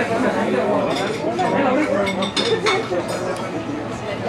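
Background talk of diners with light clinks of tableware, glasses and cutlery, a few sharp clinks in the middle.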